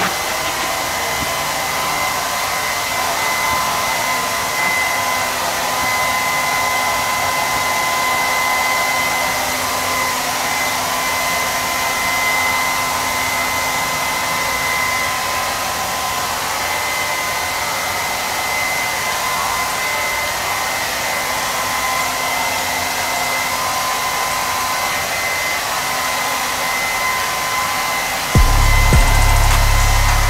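Handheld hair dryer running steadily: a constant rush of air with a steady motor whine. Near the end a louder low rumble comes in suddenly.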